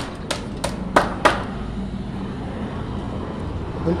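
A hammer knocks four times on wooden formwork in the first second and a half, sharp and quickly spaced. A steady low background hum follows.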